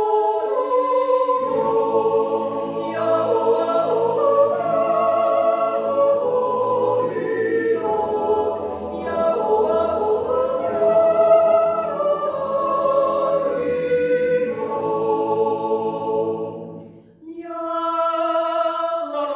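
Swiss yodel choir of men and women singing a cappella in close harmony, holding long chords. The low voices come in about a second and a half in, and the singing breaks off briefly near the end before starting again.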